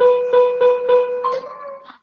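Spinning-wheel sound effect from a lesson game: a steady electronic tone that pulses about three times a second, shifts in pitch and dies away near the end as the wheel comes to rest.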